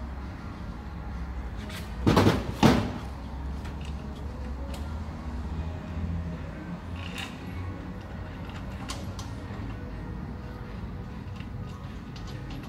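Metal hardware being handled on a workbench: two loud clattering knocks about two seconds in, then scattered light clinks of bolts and tools.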